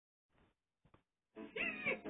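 A short, meow-like pitched cry whose pitch bends up and down, starting about one and a half seconds in, after a couple of faint ticks.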